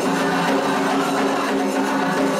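Candomblé ritual music on atabaque hand drums, with the lead rum drum playing for the orixás' dance, running on without a break.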